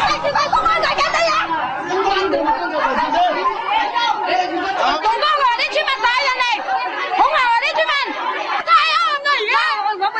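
Many people's voices talking and calling out over one another at once, some raised and high-pitched, in an agitated confrontation.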